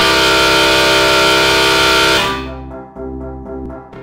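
Live electronic music: a loud, harsh sustained chord with a hissy top cuts in suddenly and holds for about two seconds, then drops away to a repeating keyboard pattern over bass.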